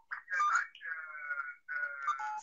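A man's voice coming through a video-call link, thin and narrow like a telephone line, with a drawn-out syllable in the middle.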